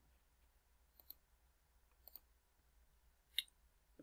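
Near silence with three faint short clicks, about one, two and three and a half seconds in, the last the clearest.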